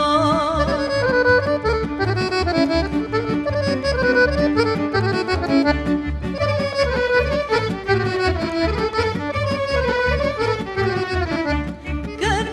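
Instrumental break of a Balkan folk ensemble: an accordion plays a fast melody, with violins over a double bass and rhythm section keeping a steady beat.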